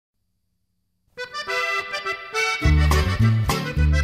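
Norteño music opening after about a second of silence: an accordion plays the intro, and a bass line with rhythm accompaniment joins about halfway through.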